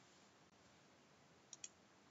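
Computer mouse button clicked twice in quick succession, a double-click, over near-silent room tone.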